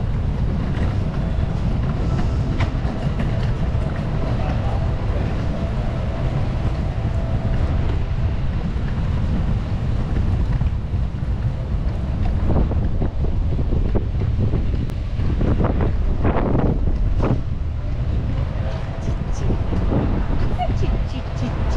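Wind buffeting the microphone of a walking camera, a steady low rumble.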